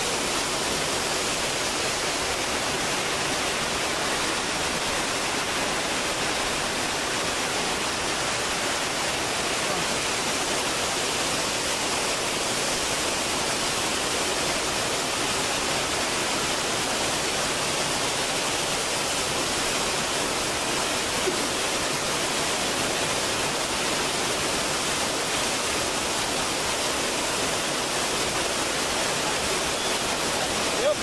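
Steady roar of rushing water from Rancheria Falls, an even, unbroken hiss that holds level throughout.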